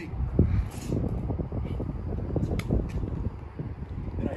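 Low, irregular rumble of wind buffeting and handling noise on a phone microphone as the phone is swung round, with a few faint clicks.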